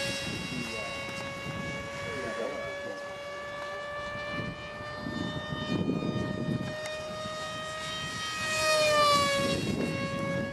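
Electric motor and propeller of a foam RC F-15 model jet, whining at a steady pitch while it flies. Near the end it grows louder and its pitch drops as the plane passes close by.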